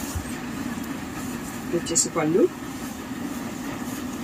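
A single short spoken sound about two seconds in, over a steady low background hum.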